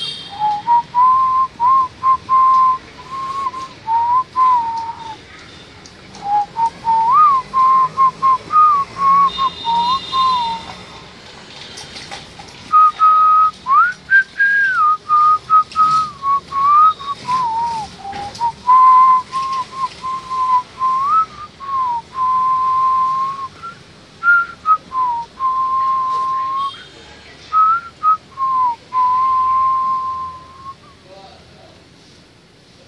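A person whistling a slow tune: one clear tone held in short notes with small slides up and down, broken by frequent sharp clicks.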